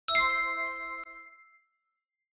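Notification-bell sound effect: a single bell-like ding with several ringing tones, fading out over about a second and a half, with a faint click about a second in.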